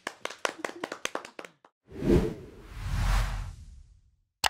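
A few people clapping by hand for about a second and a half, then an outro whoosh sound effect that swells twice.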